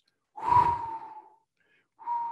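A man's audible in-breath between phrases, lasting about a second, with a faint whistling tone running through it.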